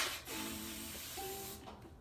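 Aerosol can of hair mousse hissing steadily for about a second and a half as foam is dispensed from the nozzle.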